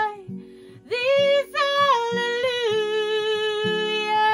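A woman singing a slow worship song, holding long notes that slide down in pitch, with a short break for breath near the start, over a soft, evenly pulsing instrumental accompaniment.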